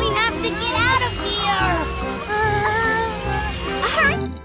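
Animated cartoon soundtrack: background music under short, gliding character voices and exclamations, with held tones in the second half.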